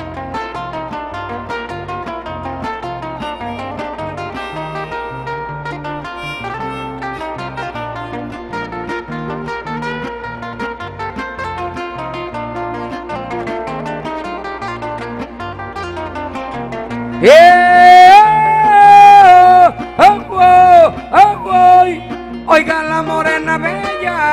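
Acoustic guitars playing the torrente tune of a Panamanian décima, steady and plucked. About seventeen seconds in a man's voice comes in much louder over them, singing long held notes that slide up into each one.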